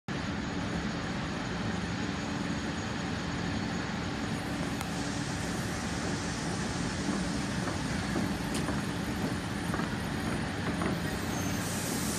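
A steady hum and rumble from a train at a platform in a large railway station, with a constant low drone and no distinct events.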